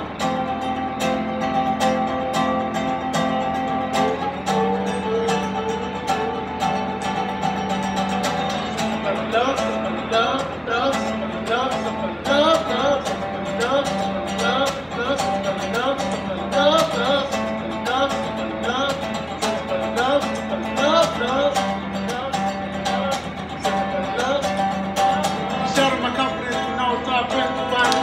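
Archtop acoustic guitar played live, held chords for the first few seconds, then a busier picked melody with sliding notes from about a third of the way in.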